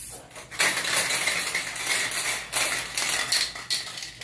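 Aerosol spray-paint can hissing in a run of short, uneven strokes, starting about half a second in.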